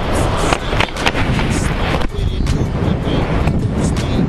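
Loud, buffeting rush of freefall wind over the camera's microphone during a tandem skydive, with a pop song laid over it.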